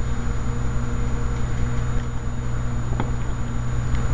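Steady low electrical hum with a thin constant high whine above it, and a faint click about three seconds in.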